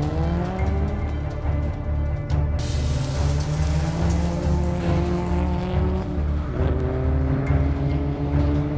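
Scion tC race car's engine revving up as it accelerates away from the start line, its pitch rising, then rising again after a gear change about six and a half seconds in. Background music with a steady pulsing beat plays over it.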